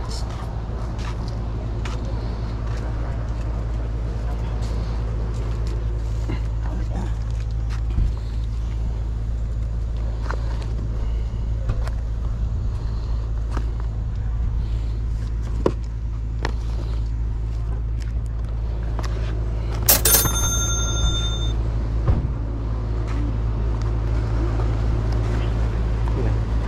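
A steady low rumble with scattered light clicks and knocks of cardboard boxes being picked up and handled. About twenty seconds in, a sharp knock rings on for about a second in several high tones.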